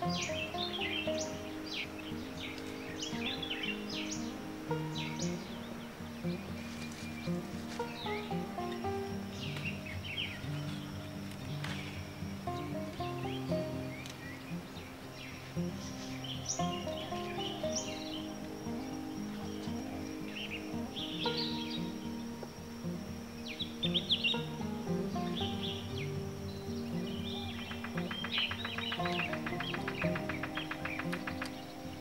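Gentle background music with birds chirping over it throughout, and a fast, even trill in the last couple of seconds.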